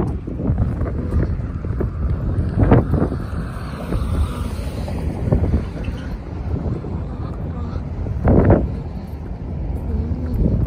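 Wind buffeting a handheld phone's microphone, a steady low rumble, with city street traffic going by. Two short bursts of talking stand out, about three seconds in and again near the end.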